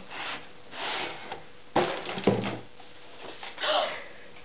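Cardboard boxes being handled: rustling and scraping of cardboard in several short bursts as an inner box is pulled out of a larger one, with one sharp knock a little before the middle.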